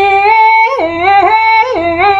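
A solo voice singing long, held notes with no instruments heard, the pitch dropping and springing back up three times in quick turns.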